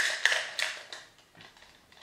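Clicking and rattling of small hard makeup items being handled and set down on a table, a quick cluster of clicks in the first second, then a few lighter taps.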